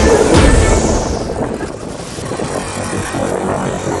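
Dramatic intro soundtrack: a rising whoosh sweeps upward and a hit lands about half a second in. After about a second and a half it drops to a quieter, rough noise bed.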